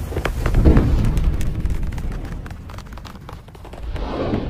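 Intro sound effect: a deep, explosion-like rumble scattered with sharp crackles, swelling about a second in and then slowly fading.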